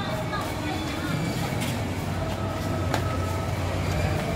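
Busy market ambience: background chatter of shoppers over a steady low engine rumble, with one sharp click about three seconds in.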